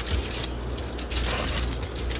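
Aluminium foil crinkling and rustling as rolled pie-crust rounds are lifted and handled on it.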